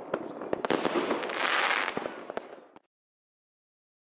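Fireworks crackling and popping: a quick run of sharp pops with a brief swell in the middle, cutting off suddenly just before three seconds in.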